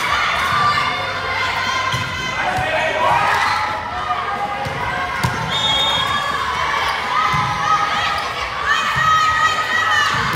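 Volleyball rally: the ball struck in sharp thuds off arms and hands, under steady shouting and cheering from girls' voices and the crowd, with long high-pitched calls near the end.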